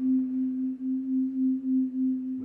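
Frosted quartz crystal singing bowls sung with mallets, holding one steady low tone that pulses in loudness about three times a second.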